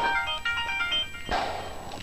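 A phone's electronic ringtone playing a short melody of thin, high tones, followed by a brief rustle about a second and a half in.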